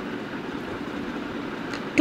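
Steady background room noise, an even hiss with no distinct events.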